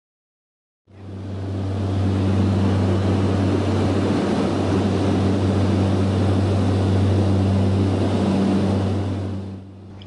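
Small aircraft's engine heard from inside the cabin: a steady low drone with a broad hiss. It fades in about a second in and fades down near the end.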